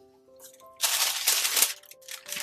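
A sheet of parchment paper rustling and crinkling as it is picked up and handled, one burst a little under a second long starting nearly a second in, with a softer rustle near the end.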